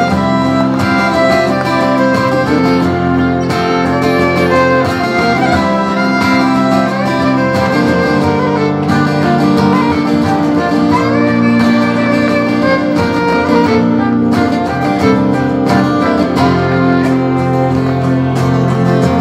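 Live folk band playing an instrumental break: a fiddle carrying the melody over strummed guitars, loud and steady throughout.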